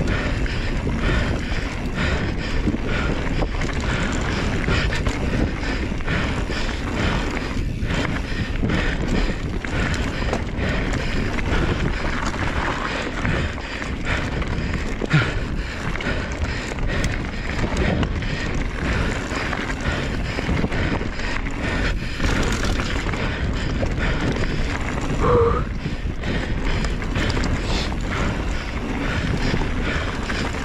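Mountain bike ridden fast down a dirt trail: steady wind rush on the camera microphone, with tyre noise and frequent rattles and knocks from the bike over the bumps, and a brief squeak near the end.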